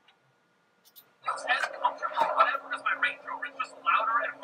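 Near silence for about a second, then a man's voice from a video played back through the computer's speakers. A faint steady low tone runs under the voice.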